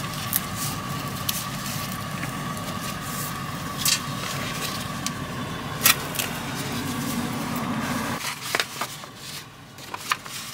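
Steady machine hum, a low rumble with a faint thin whine over it, cut off suddenly about eight seconds in. Over it come a few sharp clicks and soft handling sounds, then a light rustle of paper near the end.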